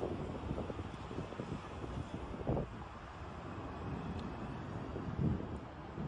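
Wind on the microphone: a steady low rumble, with brief gusts about two and a half seconds in and again near the end.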